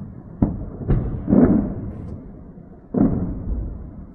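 Explosions booming: four sharp blasts in about three seconds, each followed by a trailing rumble, the third the loudest. They are detonations from a missile strike on a military site.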